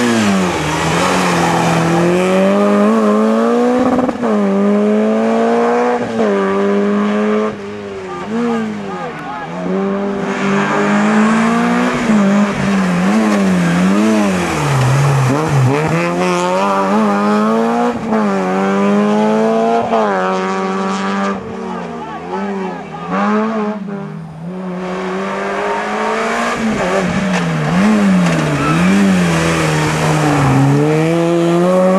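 Peugeot 106 rally cars driven hard through hairpins one after another: the engine note drops as each car brakes and downshifts into the bend, then climbs again as it accelerates out. Two brief lulls fall between cars, around eight seconds in and again around twenty-two.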